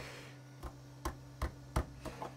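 Four short knocks, about 0.4 s apart, as a large 3D-printed speaker enclosure is pushed and rocked on the printer's build plate to break it free, over a steady low electrical hum.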